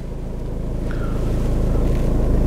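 Infiniti Q50's four-cylinder diesel engine idling, heard from inside the cabin as a steady low hum that grows slightly louder.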